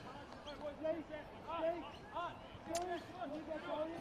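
Faint voices of people around the football ground calling out over quiet open-air ground ambience, with a short sharp knock about three-quarters of the way through.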